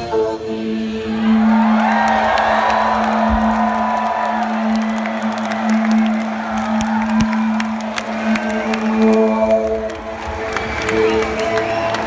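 Concert crowd cheering and whooping over one low note held by the band, with no drums. About eight and a half seconds in, the band's layered chords come back in over the cheering.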